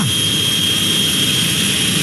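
A jet aircraft engine running: a steady high whine over an even rushing noise.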